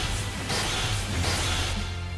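Cartoon sound effects of Beyblade spinning tops clashing in the stadium: a few rushing whooshes and crashing impacts over loud background music.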